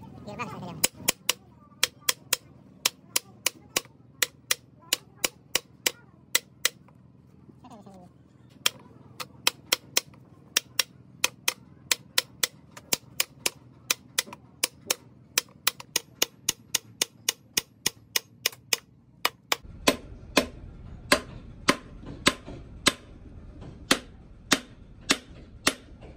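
Hammer tapping repeatedly on the steel pinion flange of a truck differential during pinion setting. The sharp metallic knocks come about two to three a second, with a short pause about seven seconds in.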